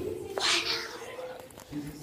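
A girl's short, high-pitched vocal squeal about half a second in.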